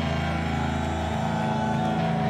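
Electric guitars and bass letting a held chord ring on through the amplifiers, steady and without drums, the low notes shifting a little past a second in.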